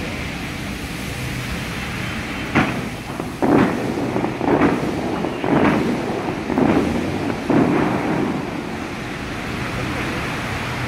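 Water-show fountain jets firing in a series of six sudden blasts, about one a second, each a thump followed by the hiss of rushing water, over a steady wash of falling spray.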